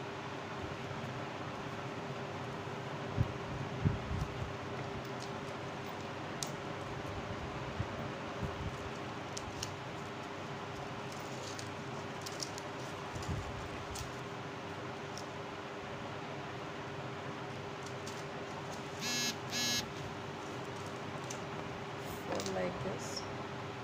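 Faint handling of paper strips being pressed and pasted by hand, small clicks and rustles over a steady hum. Two short high-pitched sounds close together near the end.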